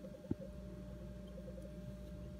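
Quiet room tone with a faint steady hum, and a single brief click about a third of a second in.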